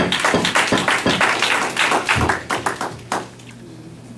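Applause from a small audience, with separate hand claps easy to pick out, dying away about three seconds in.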